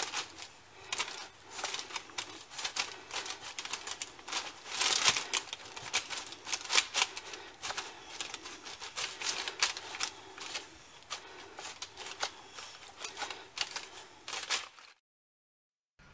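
Hands squeezing and kneading a sticky date and oat mixture in a glass bowl: irregular wet, sticky clicking and squelching. It cuts off suddenly about a second before the end.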